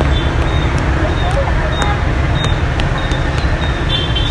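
Fingers flicking the crisp batter shell of a Vietnamese fried banana (chuối chiên) several times, a few light, dry clicks that show how crunchy the crust is, over steady street traffic noise.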